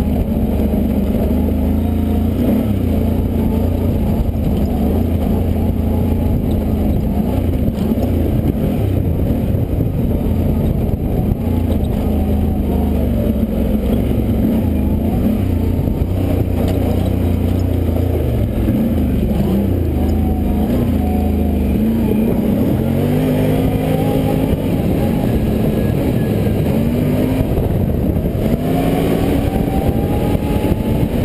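ATV (quad) engine running under load on a dirt trail, its pitch fairly steady at first, then rising in repeated short sweeps as the throttle opens up in the last several seconds.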